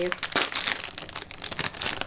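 A plastic snack bag of pickled onion rings being pulled open, with a dense run of crinkling and crackling and a sharper crackle about a third of a second in.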